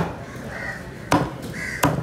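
Heavy knife chopping through tuna flesh into a wooden cutting board: three sharp strokes, one at the start, one about a second in and one near the end.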